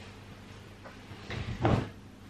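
A coat being put down on a seat: a short soft thump with fabric rustling about a second and a half in.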